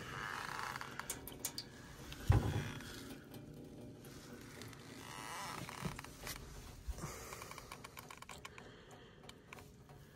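Faint scattered light clicks and scrapes, with one dull thump about two and a half seconds in.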